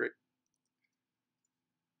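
Near silence: the last of a spoken word at the very start, then room tone with a faint steady hum.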